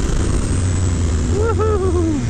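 Suzuki DR-Z400SM's carbureted single-cylinder engine running steadily at cruising speed, with wind and road noise rushing over the helmet microphone.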